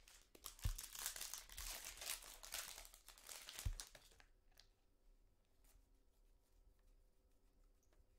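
Foil wrapper of a Panini Prizm trading card pack crinkling and tearing as it is opened, for about four seconds, with two soft thuds in it. After that only faint clicks of the cards being handled.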